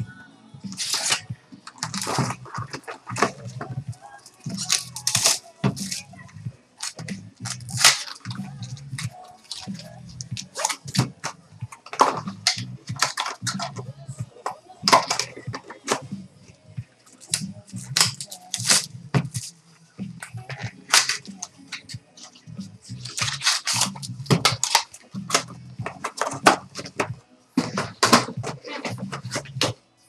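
Select basketball card box and foil packs being opened by hand: repeated crinkling and tearing of wrappers and the rustle of cards being handled, in quick irregular strokes, over background music.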